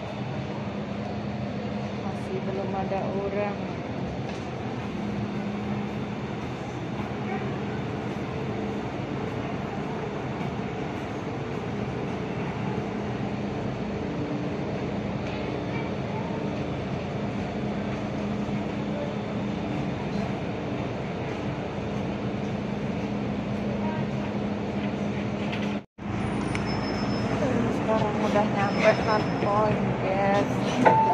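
Steady running noise of an MTR metro train heard from inside the carriage: a continuous rumble with a low hum. There is a brief break near the end, after which voices grow louder.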